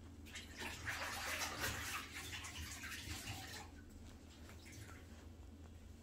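Water running for about three seconds, then stopping, over a low steady hum.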